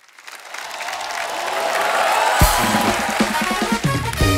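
Studio audience applause swelling up. A little over halfway through, a short music sting comes in over the clapping, opening with a hard drum hit and a beat.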